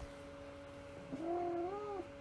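A faint, short wavering cry starting about a second in, rising in pitch and then wobbling, over a low steady hum.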